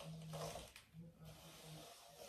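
Faint rustle of a comb being drawn through thick, coily hair, with a soft low hum that breaks off and resumes several times.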